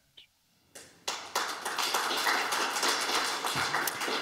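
Audience applauding, starting about a second in after a brief silence and going on steadily as many overlapping claps.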